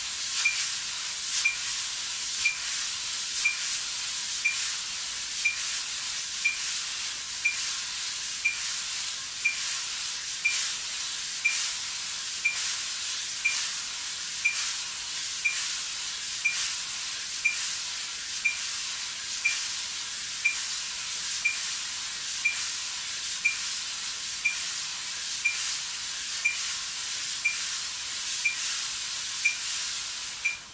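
Two wire drum brushes swept in continuous circles on a practice pad, a steady hiss that swells slightly with each stroke. A metronome beeps once a second (tempo 60), each beep a short high blip, the loudest thing heard.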